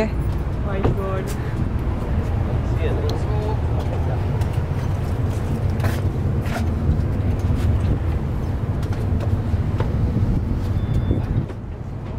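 Car ferry's engines running with a steady low rumble as the ferry gets under way.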